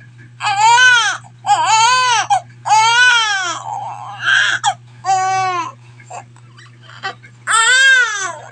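Newborn baby crying: a run of loud wailing cries, each rising and then falling in pitch. Three come in quick succession, then two more follow after short pauses, the last near the end.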